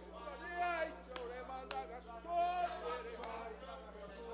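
Raised voices in a large hall, with two sharp hand claps about one and one and a half seconds in.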